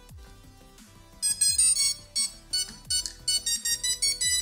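A run of short electronic beeps at several pitches, starting about a second in: the brushless speed controllers' power-up tones as the combat robot is switched on, showing that power is reaching the electronics. Soft background music with a steady beat plays underneath.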